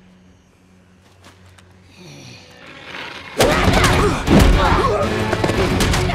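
Film action soundtrack: a hushed stretch with a faint low hum, then, about three and a half seconds in, a sudden loud onset of music with heavy impacts and thuds.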